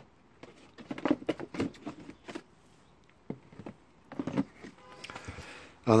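Handling noise: scattered light clicks and rustles as plastic seed trays and plant pots are touched and moved about.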